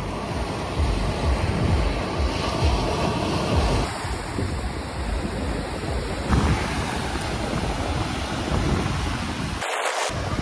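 Ocean surf washing onto a sandy beach, with strong wind buffeting the microphone in uneven low rumbles.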